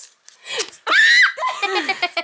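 A girl's short, high-pitched shriek about a second in, as a cold wax strip is ripped off her upper lip. It is followed by choppy giggling.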